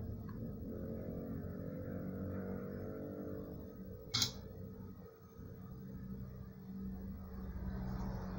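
A steady low hum runs throughout, with one sharp click about four seconds in.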